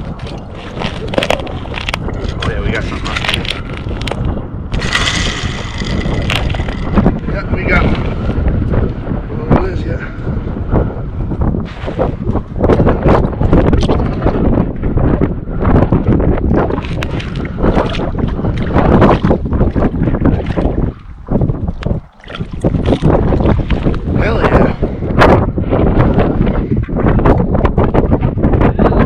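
Strong wind buffeting the microphone, a dense low rumble that eases briefly about three-quarters of the way through.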